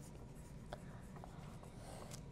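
Faint scratching of several wooden pencils writing on paper, with a light tick of a pencil point about a third of the way in.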